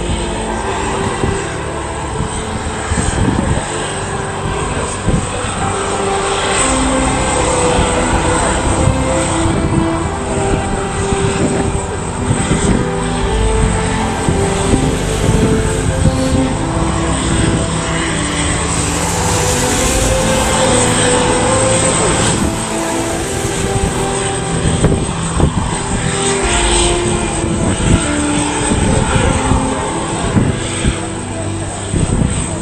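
British Airways Boeing 747-400 jet engines running steadily as the airliner rolls along the runway, with music playing over it.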